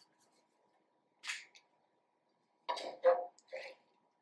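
A few short scraping and tapping sounds of a kitchen utensil against a skillet: one brief scrape about a second in, then three quick ones close together near the end.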